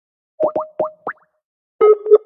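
Electronic phone-call tones as an outgoing call is placed: four quick rising blips in the first second, then two short beeps near the end.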